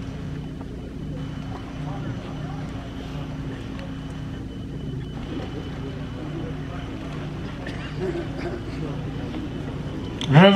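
Open-air ambience: a low, irregular murmur of voices over a steady low hum, with no distinct event.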